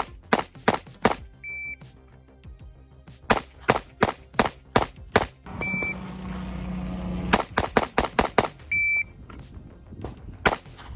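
Three rapid strings of 9mm pistol fire from a compensated Sig P365X Macro, several shots a second in each string. Three short, high electronic beeps fall between the strings, and a steadier low sound runs for about two seconds before the last string.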